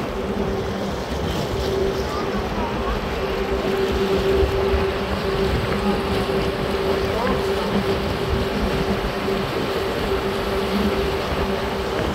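A tugboat's engine running steadily underway, a continuous drone with a steady low hum, mixed with wind and water rush.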